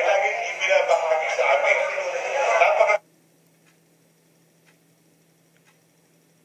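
A man's voice singing through a microphone, heard as playback from a video, stops abruptly about three seconds in. After it, only a faint tick about once a second, like a clock ticking, remains.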